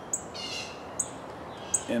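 Songbird calling: three short, high chirps, with a longer call from a bird between the first two.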